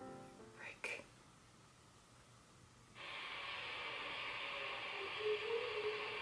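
Background piano music ends right at the start, followed by a short click just under a second in. About halfway through, a steady hiss cuts in suddenly and runs on: the soundtrack of the LASIK surgery footage, with a faint voice in it near the end.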